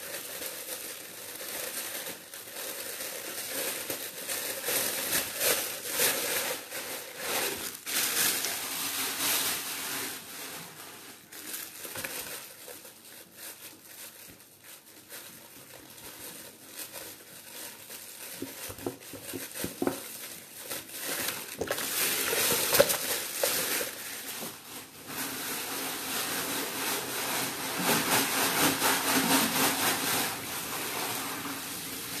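Clear plastic bag crinkling and rustling in irregular spells as hands work raw meat out of it into an aluminium pot, quieter for a stretch in the middle.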